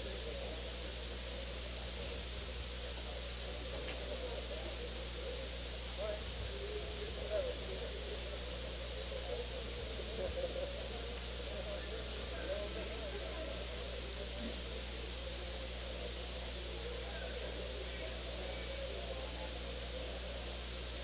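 Background murmur of voices in a pool hall over a steady low hum, with a few faint clicks of pool balls from other tables.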